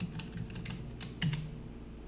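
Typing on a computer keyboard: a few irregular key clicks, with a small cluster a little past one second in.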